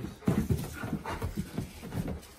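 Alaskan malamutes making several short whimpering sounds, with panting, as the two dogs greet and play.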